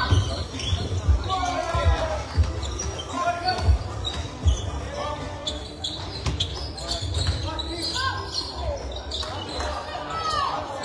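Basketball bouncing on a hardwood gym floor during play, a run of irregular low thuds that come most often in the first half, ringing in a large hall. Players' voices call out over them.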